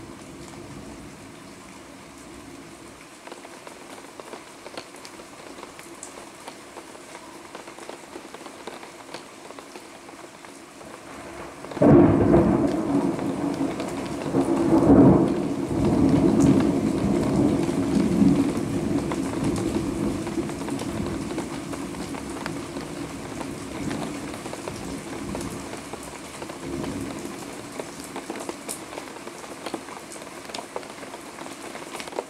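Steady rain falling, then partway through a sudden clap of thunder that swells again a few seconds later and rolls on as a long, slowly fading rumble.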